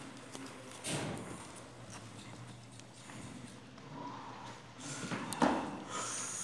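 Quiet hall with a few faint knocks, one about a second in and more near the end: weightlifting shoes stepping on the wooden platform as the lifter sets his feet at the barbell.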